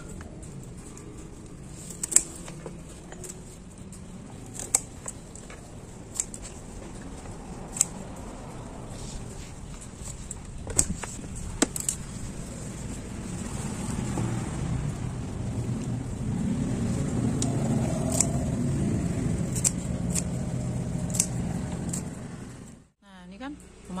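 Scissors snipping through water spinach (kangkung) stems, a sharp snip every few seconds, about ten in all. In the second half a low rumble of a passing road vehicle swells and holds for several seconds, then the sound cuts off abruptly near the end.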